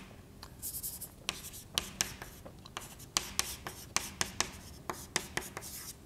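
Chalk writing on a blackboard: an irregular run of sharp taps and short scratches as symbols are chalked on.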